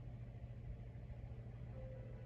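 A faint, steady low hum, with a faint musical tone coming in near the end.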